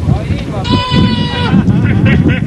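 Men shouting over a rumble of background noise. Near the middle comes one drawn-out, high, steady call lasting under a second.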